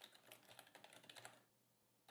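Faint computer keyboard typing: a quick run of keystrokes that stops about one and a half seconds in.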